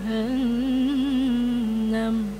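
A woman reciting the Quran in tarannum, the melodic recitation style, holding one long note that wavers in small ornamental turns and drifts slightly lower near the end.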